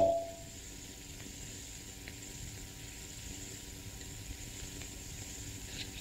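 Faint steady hiss of an old film soundtrack with a low hum under it, and no other sound.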